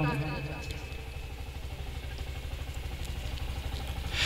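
A low, steady engine-like rumble with an even pulse, as the tail of a man's recited line fades out at the start.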